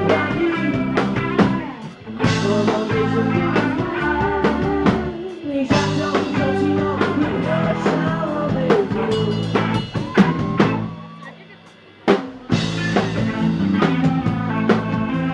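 Live rock band playing: electric and acoustic guitars over a drum kit. Near the end the band drops out for about a second, then comes back in all together.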